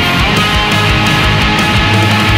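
Pop-punk rock played on electric guitars and electric bass, with the rhythm guitar and bass in drop D tuned a half-step down, over a steady drumbeat.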